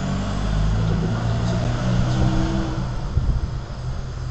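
A low engine rumble with a few steady low tones, swelling through the middle and easing off near the end.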